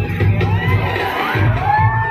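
A large crowd cheering and shouting, many voices rising and falling over one another, with music with a pulsing bass playing underneath.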